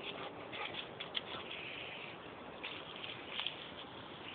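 Dogs' paws scuffling and running on dry grass and fallen leaves: a steady patter and rustle with a few sharp clicks.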